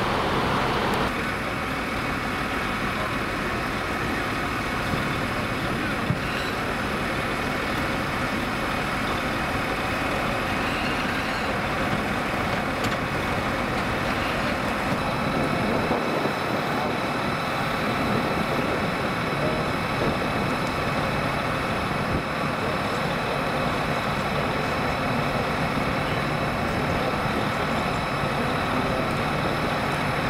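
Fire engine's engine and pump running steadily, a constant drone with a thin, steady whine above it, with voices faint in the background.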